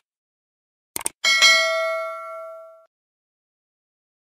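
Subscribe-button animation sound effects: two quick clicks about a second in, then a notification bell ding that rings out with several pitches and fades over about a second and a half.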